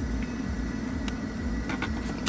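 Steady low hum inside the cabin of a 2009 Mercedes-Benz S600 with its twin-turbo V12 idling.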